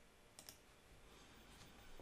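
Near silence, broken once about half a second in by a single faint computer click, the kind that sends a typed prompt.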